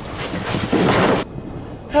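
Storm-at-sea sound effect: a loud rush of noise, like crashing water, that cuts off suddenly just over a second in and leaves a low rumble.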